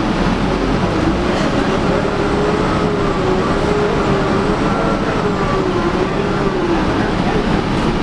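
2011 Gillig Advantage transit bus heard from inside the cabin, engine and drivetrain running under a steady rumble, with a whine that rises about a second in and then wavers up and down.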